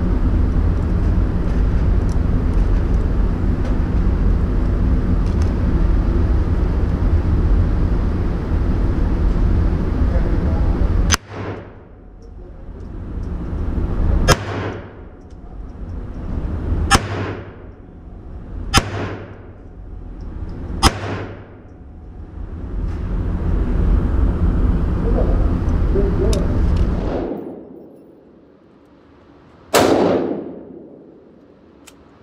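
Single shots from a Ruger Mark IV Tactical .22 LR pistol in an indoor range, about half a dozen fired one at a time two to three seconds apart, each with a short echoing tail. A steady low rumble runs before the first shot and again for a few seconds later on.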